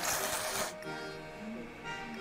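A person slurping tsukemen noodles from a bowl of dipping soup: one loud, hissing slurp lasting under a second, at the start, over background music.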